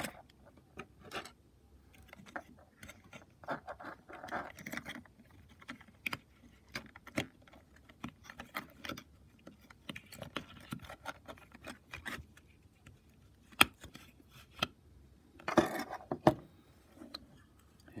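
Plastic housing parts of a small rechargeable LED light being handled and worked apart by hand: scattered sharp clicks and light scraping, with one louder click about 13 seconds in.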